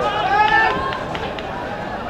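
Mostly speech: a voice talks for under a second, then a few short sharp clicks follow about a second in, over steady background noise.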